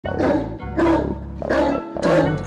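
Opening of a trap instrumental: a steady deep bass under three short, bright sampled hits about 0.7 seconds apart.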